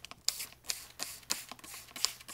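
Hand-held trigger spray bottle squirting repeatedly, a quick series of short, sharp sprays, as it douses a small fire of burning paper time cards.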